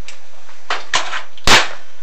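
A few sharp clicks, then one much louder sharp knock about one and a half seconds in.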